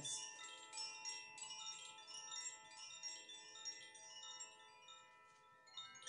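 Hanging wooden tube chimes, set swinging by hand so their clappers strike a cluster of soft, ringing notes that overlap and slowly die away. A fresh strike comes just before the end.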